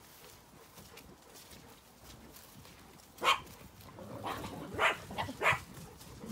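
Small dog barking four times in the second half, the barks short and about half a second to a second apart, after a quiet first few seconds.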